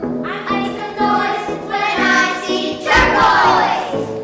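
A group of young children singing together over instrumental accompaniment, the voices coming in just after the start. The song is loudest about three seconds in.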